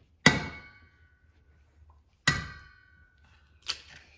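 An egg knocked twice against the rim of a stainless steel mixing bowl to crack it, each knock setting the bowl ringing for about a second. A lighter, shorter knock comes near the end.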